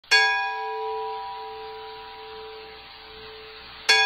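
A bell-like chime struck twice, about four seconds apart: each strike rings on in a few steady tones and slowly fades, and the second strike comes just before the end.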